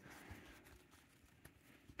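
Near silence, with faint rustling of trading cards being handled in the hands and one small tick about one and a half seconds in.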